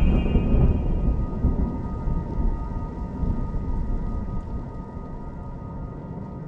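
A heavy, low rolling rumble of thunder that hits at the start and slowly dies away over several seconds, under a faint, steady drone of sustained tones.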